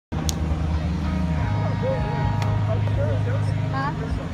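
A steady low engine hum that shifts pitch about a second and a half in, with two sharp clicks and faint voices of players and onlookers in the second half.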